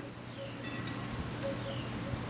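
Quiet background sound: a steady low hum under faint noise, with a few faint, short high chirps.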